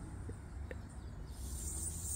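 Quiet outdoor garden ambience: a steady high-pitched insect trill, coming in louder about two-thirds of the way through, over a low rumble, with a couple of faint ticks early on.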